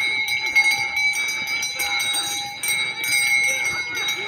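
Brass neck bells on a pair of walking bullocks ringing and jingling continuously, several clear tones held steady throughout.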